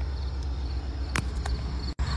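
Crickets chirping, a thin repeated trill, over a low steady rumble, with two light clicks a little past a second in. The sound cuts off abruptly just before the end.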